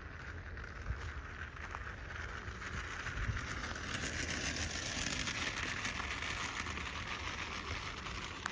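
Child's bicycle with training wheels rolling over asphalt, a rolling hiss that grows louder through the middle of the stretch as the bike comes closer.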